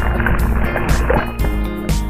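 Background music with a steady beat. For about the first second it is mixed with churning whitewater rushing. The water sound fades and the music plays on alone.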